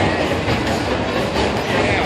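Loud, steady street noise of a busy nightlife district: a continuous low rumble with indistinct voices mixed in.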